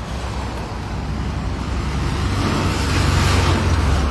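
A car driving past close by, its engine and tyre noise growing louder as it approaches and loudest near the end.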